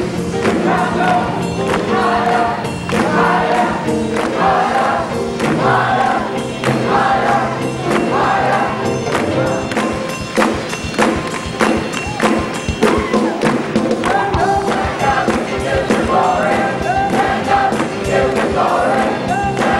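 Gospel choir singing with piano accompaniment over a steady beat.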